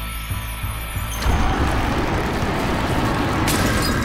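Cartoon sound effect of giant vines bursting up out of the ground and through a roof: a loud rumbling rush that swells about a second in, over background music.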